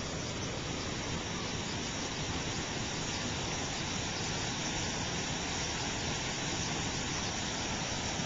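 Steady rushing of creek water flowing over a concrete low-water crossing and spilling off its edge, an even wash of noise with no distinct events.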